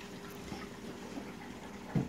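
Reef aquarium's circulating water trickling steadily at a low level, with a faint steady hum underneath.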